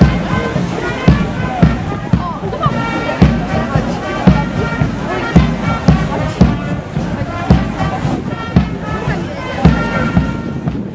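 Brass band playing a march, its bass drum beating steadily about twice a second under sustained horn notes.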